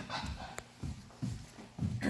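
Handling noise from a handheld microphone carried by someone moving about: a sharp click about half a second in, then a few short, low thumps.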